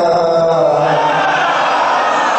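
A man's voice chanting a long held note into a microphone. About a second in it gives way to many voices of a crowd shouting together.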